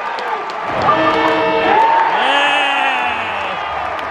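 Football stadium crowd cheering, with men yelling drawn-out shouts of celebration. A short, steady held tone sounds about a second in.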